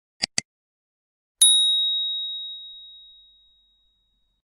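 Computer mouse double-click sound effect, then a single bright bell ding that rings out and fades over about two seconds: the click-and-notification-bell effects of a subscribe-button animation.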